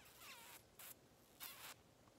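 Near silence, with three faint, brief breathy hisses from a speaker pausing between words.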